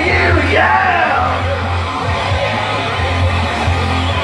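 Loud live rock music over a PA: a yelled vocal line trails off about a second in, and the music carries on under it with a heavy, steady bass.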